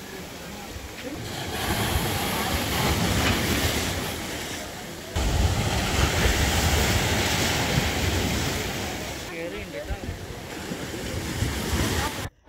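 Rough sea surf breaking against a broken concrete seawall and washing over the rubble: a continuous rush of water that swells, turns suddenly louder about five seconds in, and eases off near the end.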